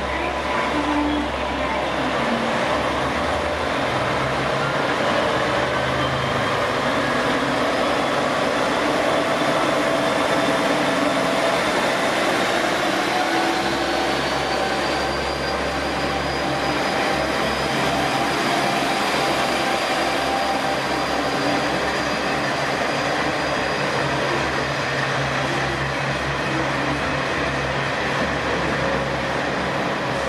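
KiHa 40-series diesel railcar pulling out of the platform. Its diesel engine runs steadily, and its note climbs gradually for several seconds as the train picks up speed, then holds steady.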